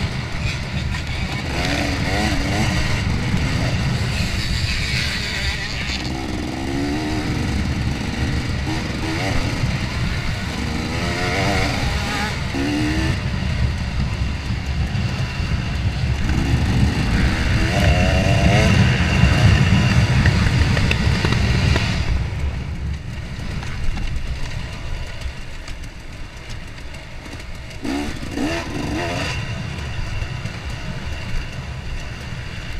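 2014 KTM 250 XC-W two-stroke dirt bike engine, heard from on the bike, revving up and down repeatedly as the rider works the throttle. It is loudest a little past halfway, then eases off for the rest.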